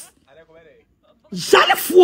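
A man's voice, faint at first, then about one and a half seconds in a loud, breathy burst of laughter.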